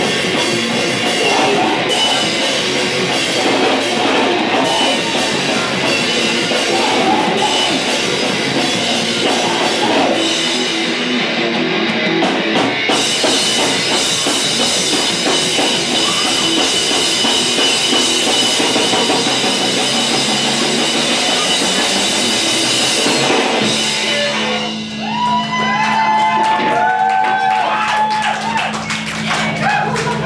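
Live rock band playing loud through a PA: amplified guitars and drum kit. About three quarters of the way through, the full band drops away, leaving a held low note with sliding high tones ringing over it.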